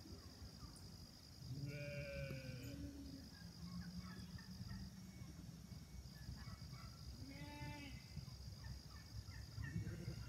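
Sheep bleating twice: a longer call about a second and a half in, and a shorter one about seven seconds in.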